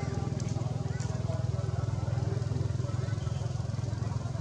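A nearby engine running with a low, steady drone that eases off just after the end, with people's voices talking in the background.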